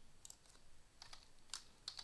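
Faint keystrokes on a computer keyboard: a few separate, irregularly spaced taps while a line of code is typed.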